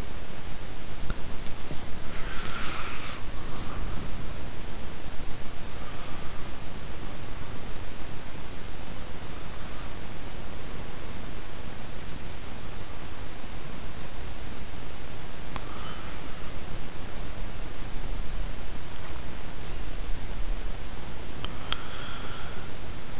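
Steady hiss of an open microphone's noise floor, with a few faint, brief soft sounds over it.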